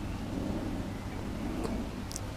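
Wind buffeting the camera microphone: an uneven low rumble with nothing distinct above it.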